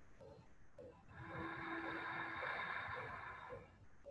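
A long audible breath drawn through the throat, ujjayi ('ocean') breathing, starting about a second in and lasting about two and a half seconds.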